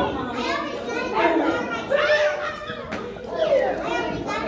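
Children playing: several young children's voices chattering and calling out over one another.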